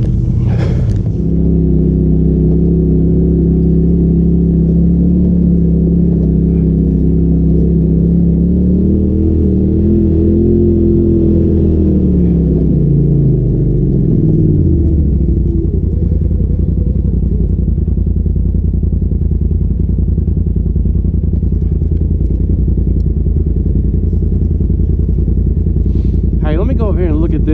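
Polaris RZR side-by-side's turbocharged engine running at low speed over rough trail, heard from inside the cab. Its note climbs briefly about nine seconds in, then drops away by about fifteen seconds and settles into a steady low rumble.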